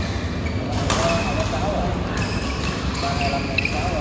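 Badminton rally on an indoor court: sharp racket strikes on the shuttlecock, a second or so apart, with short squeaks of shoes on the court floor, over a steady low hum and voices in the hall.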